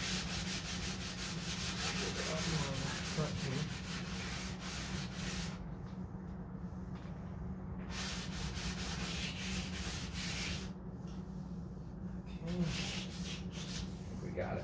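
Rapid back-and-forth hand rubbing across the fiberglass surface of a 1969 Corvette C3 hood, a scratchy hiss of quick strokes. It comes in spells, with a pause of about two seconds near the middle and fainter strokes near the end.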